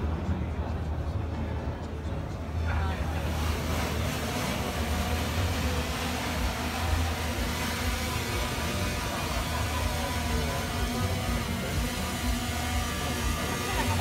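Intel Falcon 8+ octocopter's eight electric rotors spinning up about three seconds in as it takes off. They settle into a steady whirring hover with several overlapping rotor tones, over a low steady hum.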